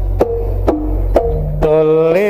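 Jaranan gamelan music: regular struck, pitched percussion beats about two a second over a low sustained drone. Near the end, a long held melodic note comes in over the beat.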